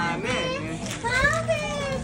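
High-pitched voices in gliding, sing-song calls mixed with laughter.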